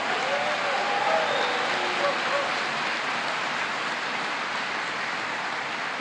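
Audience applauding steadily, with a few faint voices in the crowd in the first couple of seconds.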